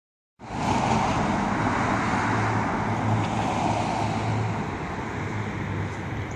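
Road traffic on a city street: a low, steady engine hum under tyre noise that slowly fades over the last couple of seconds.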